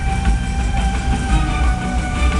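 Music from a fountain show's loudspeakers, with long held notes, over the steady rushing and low rumble of the water jets.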